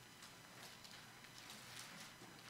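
Near silence: room tone with a few faint ticks as the thin pages of a Bible are leafed through.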